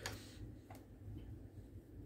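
Faint low hum with a few faint, short clicks of a computer mouse, the clearest about three quarters of a second in.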